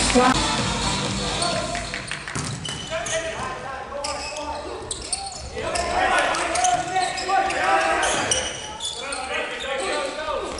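Indoor volleyball rally: sharp hits of the ball, sneakers squeaking on the court floor, and voices calling out, echoing in a large hall.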